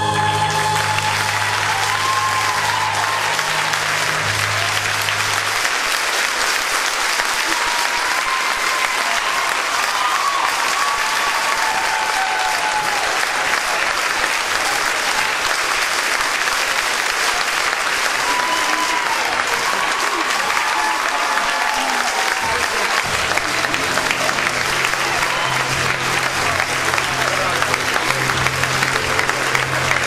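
Theatre audience applauding steadily, with scattered voices calling out and cheering through it. A low steady hum sits under the clapping for the first few seconds and comes back for the last several seconds.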